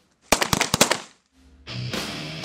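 Title-sequence sting: a quick burst of sharp cracks, about half a dozen in half a second, dying away within a second. Near the end the theme music comes in with a low bass beat.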